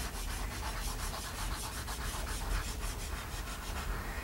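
Pastel being rubbed back and forth on drawing paper on an easel to colour in a drawing, in rapid scratchy strokes, several a second.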